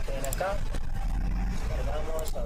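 A person's voice, brief and indistinct, sounding twice over a steady low rumble.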